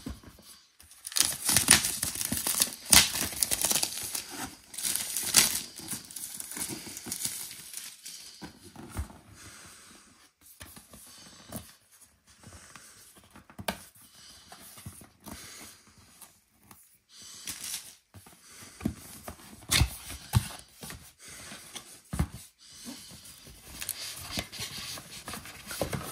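Plastic shrink-wrap being torn off and crinkled by hand and a cardboard box being opened: irregular bursts of tearing and crackling, loudest in the first several seconds, then sparser rustling with a few sharp clicks of card.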